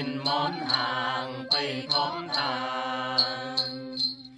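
Tày folk song: voices singing a drawn-out, wavering line that settles into one long held note, with short bright accents recurring over it.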